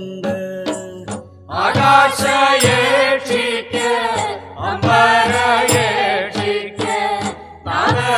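Malayalam folk song (nadanpattu): singing in phrases over a steady percussion beat, with short breaks between the sung lines.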